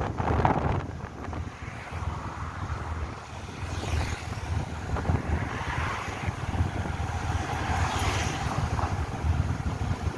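Wind buffeting the microphone of a moving motorbike, over the low rumble of the ride.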